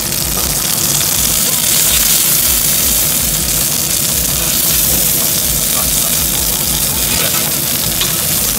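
Cherry duck breast sizzling steadily as it fries in its own fat in a hot dry pan, a continuous high hiss.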